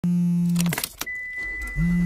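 Mobile phone vibrating in two buzzes, with a brief jangling rattle and a click between them and a steady high beep starting about a second in.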